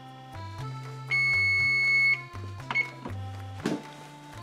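Electric range's kitchen timer going off: one long, steady, high beep of about a second, starting about a second in, as the countdown runs out. It plays over background music, and a couple of short knocks follow near the end.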